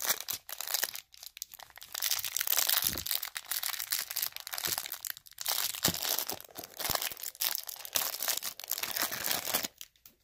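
Plastic wrapper of a pack of trading cards being torn open and crinkled off the card stack, crackling on and off with short pauses, stopping just before the end.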